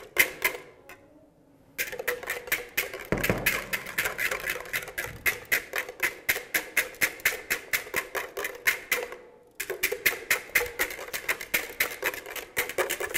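Wire whisk beating egg whites for meringue in a glass bowl by hand: a fast, regular clatter of the whisk against the glass, several strokes a second. It stops for about a second near the start and briefly again near the end, and there is a dull knock about three seconds in.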